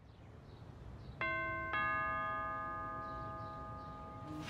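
Doorbell chime sounding a two-note ding-dong, the second note lower, both notes ringing on and fading slowly.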